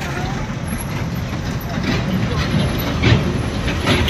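Road traffic heard from a moving vehicle: a steady low rumble with wind on the microphone as a small goods truck passes close, swelling near the end as a motorcycle comes up close.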